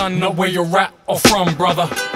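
Hip hop track with a vocal line over a sparse beat. The deep bass drops out at the start, and the sound cuts off briefly about halfway through.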